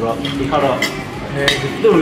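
Metal bar tools and shaker tins clinking on a bar counter, with two sharp clinks a little under a second in and again about half a second later, over background voices and music.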